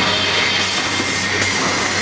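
Premade stand-up pouch packing machine running: a steady mechanical noise with a low hum and a faint high whine.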